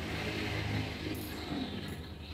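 Close-up eating sounds: a mouthful of sour fish soup with bean sprouts being taken in and chewed, with short sharp mouth sounds a little past a second in and near the end. Underneath runs a steady low background hum.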